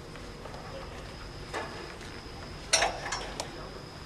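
Metal rescue hardware knocking: a click, then a sharp clack about two-thirds of the way in followed by a few lighter clinks, as the stretcher is rigged for a rope lower.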